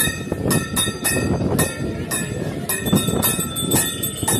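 Metal ritual bells rung rapidly for an aarti, struck about four times a second, their high ringing tones held on between strikes.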